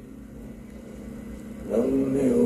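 A faint, steady low background rumble. About three-quarters of the way through, a louder held voice-like tone at a steady pitch comes in.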